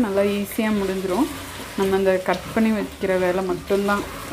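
Mixed vegetables frying and being stirred with a spatula in a pressure cooker. Over it, a woman's voice holds short, steady notes, louder than the frying.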